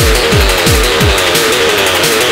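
Fast techno with a deep kick drum at about three beats a second. The kick drops out a little after a second in, leaving a repeating synth riff.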